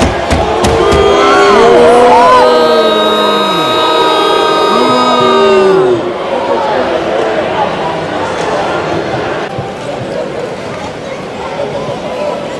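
Hockey arena crowd noise: voices calling out and music with long held notes over the first half, dropping after about six seconds to a steady crowd hubbub.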